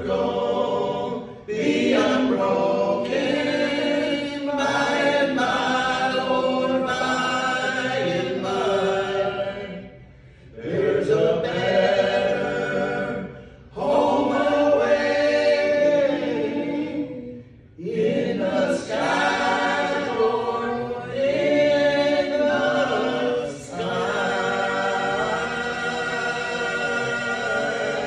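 A group of men's voices singing a gospel song in close unaccompanied harmony, in phrases of a few seconds broken by short pauses for breath.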